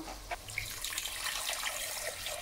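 Water poured in a steady stream into a stainless steel pot over a hot sautéed base of vegetables, oil and spices, splashing as it fills: the water going in to start the soup.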